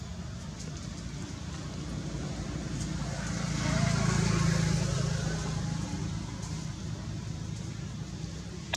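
Low rumble of a motor vehicle, growing louder as it passes about four seconds in, then fading again.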